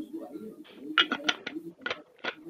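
Low cooing, as of a pigeon, mixed with a few short, sharp, speech-like sounds in the second half.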